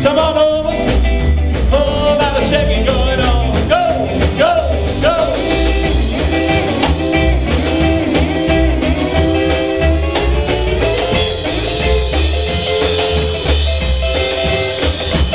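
Rockabilly band playing live: hollow-body electric guitar leading with bending notes over upright bass and drum kit.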